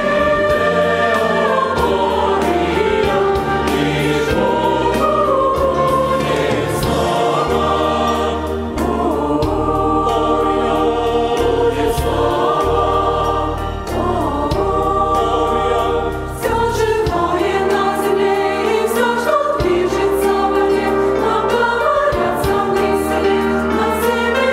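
A mixed choir of men and women singing a sacred choral piece, in long phrases with brief breaks between them.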